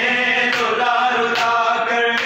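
Men chanting a noha, a Shia lament, together in sustained sung lines, with two sharp hand-on-chest slaps of matam (ritual chest-beating) keeping time.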